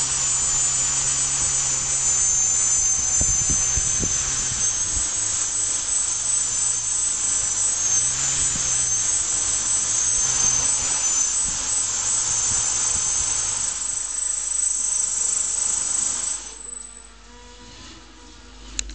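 Small quadcopter's four electric motors and propellers running with a high whine and rushing air, the pitch wavering with the throttle, with a few knocks in the first few seconds. The motors cut out about 16 seconds in.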